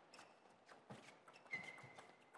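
Table tennis rally: sharp, irregular clicks of the celluloid-type plastic ball striking the rubber-covered bats and the table top. About one and a half seconds in, a short high squeak, like a shoe on the court floor.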